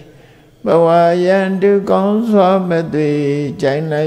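A Buddhist monk chanting verses in a man's voice, a steady sing-song recitation on long held notes that begins about half a second in after a short pause for breath.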